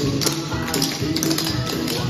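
Clogging taps of several dancers striking a hard floor in quick, sharp rhythmic clicks, over recorded music.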